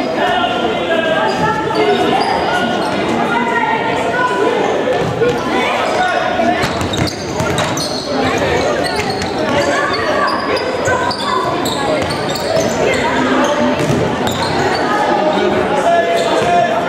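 Indoor football match in an echoing sports hall: many voices calling and talking over one another, with the thuds of the ball being kicked and bouncing on the hall floor.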